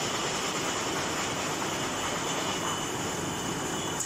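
Glass bottle depalletizer and its slat conveyor running while a layer of glass bottles is moved onto the conveyor. The sound is a steady, dense mechanical noise with a faint, steady high whine.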